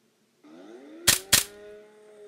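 Two sharp, loud impact sound effects about a quarter second apart, over a pitched tone that rises and then holds steady.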